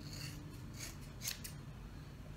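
Scissors snipping through passion twists, about four short, sharp snips in quick succession.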